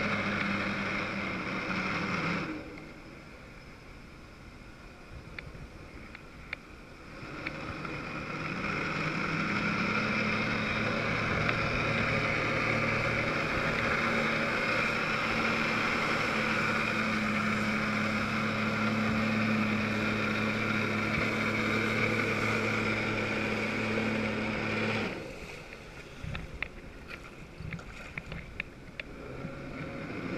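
Jet ski engine driving a Flyboard. It runs at low revs for a few seconds, picks up about seven seconds in and holds a steady high pitch while the rider is airborne, then drops back to low revs near the end.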